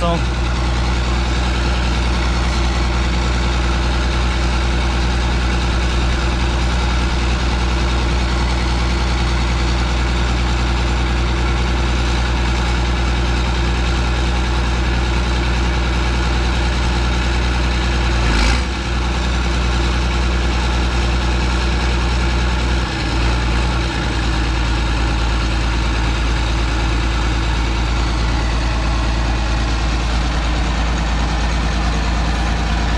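A 40-year-old John Deere tractor's six-cylinder diesel engine running loud and steady at a constant speed, with a brief dip about 18 seconds in and another around 23 seconds in.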